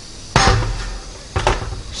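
The NuWave Oven's plastic dome lid knocking twice as it is lifted off the base: a sharp knock with a short low rumble about half a second in, and a lighter one a second later.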